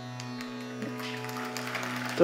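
Soft background music under a pause in a spoken discourse: a steady sustained drone with a few light plucked string notes.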